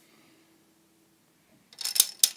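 A plastic Connect Four disc dropped into the upright grid, clattering down its column in a quick run of sharp clicks near the end. Before that there is little to hear.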